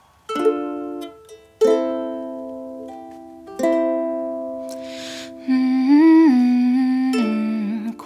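Ukulele strummed in slow single chords, three of them, each left to ring out. About two-thirds of the way in, a woman starts humming a wordless melody over the chords.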